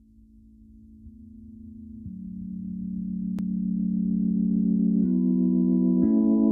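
Intro music: sustained electronic keyboard chords fading in and growing steadily louder, the chord shifting at a few points as it builds. A single faint click comes about three and a half seconds in.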